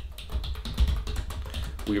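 Typing on a computer keyboard: a quick, uneven run of key clicks over a steady low hum.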